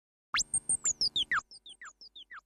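Synthesized logo sound effect: a quick upward sweep, then a rapid run of short falling chirps, about six a second, that fade into faint echoing repeats.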